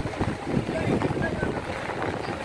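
Irregular wind rumble buffeting the microphone over traffic noise, with faint voices in the background.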